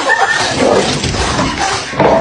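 Loud noises from a household pet, with a short pitched cry near the start.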